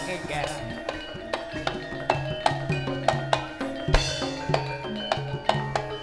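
Live Javanese jaranan ensemble music: a steady run of drum strokes over ringing tuned metal percussion holding sustained low notes.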